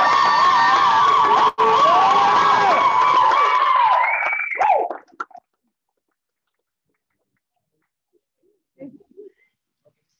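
Audience cheering for a graduate, with long high-pitched wavering calls and whoops held over the crowd noise, cut off abruptly about five seconds in.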